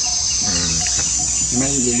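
Steady high-pitched drone of insects, unbroken throughout.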